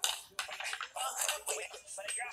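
Plastic cups clicking and clattering against each other as they are stacked quickly by hand, in a rapid run of light knocks.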